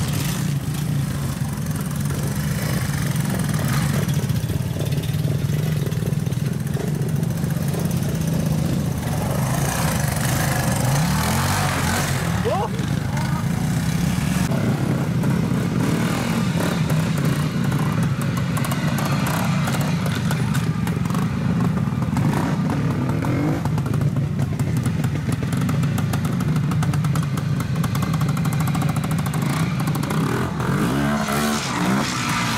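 Twin-shock trials motorcycle engine running at low revs while the bike picks its way slowly through the section, with a few short revs about ten to thirteen seconds in and again a little past twenty seconds.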